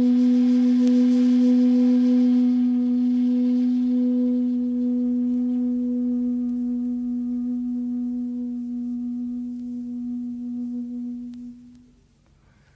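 A long bamboo shakuhachi playing one long, low held note, breathy at first, slowly fading and stopping near the end.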